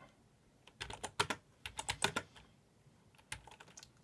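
Typing on a computer keyboard: a quick run of keystrokes about a second in, then a few scattered key presses near the end.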